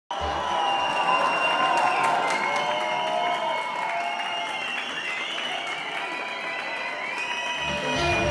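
An audience applauding and cheering over music, with high held tones that slide in pitch. Low notes of the music come in near the end.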